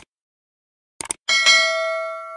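A short click at the start and another about a second in, then a bell-like chime that rings on several steady pitches and slowly fades: the click-and-bell sound effect of a subscribe-button animation.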